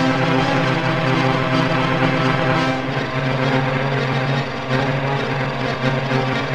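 Dark experimental electronic music: a dense drone of sustained synthesized orchestral string tones under a wash of noise. The low chord shifts about three seconds in.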